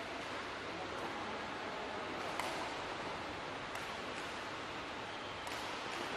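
Steady hiss of an indoor sports hall's room tone, with a few faint sharp clicks, the clearest about two and a half seconds in.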